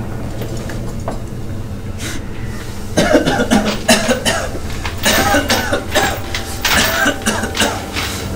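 A low steady drone, then from about three seconds in a man's harsh, broken vocal sounds, rasping and coughing-like, that run on to the end.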